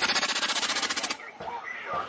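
A rapid rattling burst of sharp cracks, about two dozen a second, that stops about a second in, followed by fainter noise.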